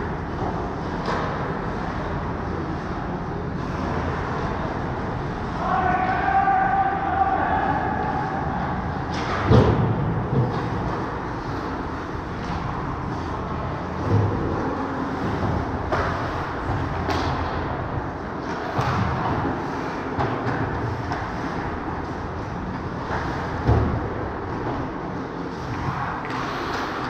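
Ice hockey play in an arena: a steady rink din with sharp knocks of puck and sticks against the boards and pads, the loudest about nine and a half seconds in and several more later. A player's long held call rings out about six seconds in.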